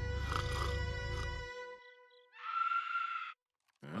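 Dramatic film score with a deep rumble and held tones that fades out, then a one-second scream that cuts off abruptly.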